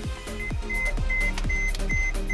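Background music with a steady beat of deep, falling-pitch drum hits, a little over two a second, under a high note that beeps on and off.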